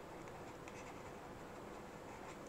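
Faint scratching and light ticks of a stylus writing on a pen tablet.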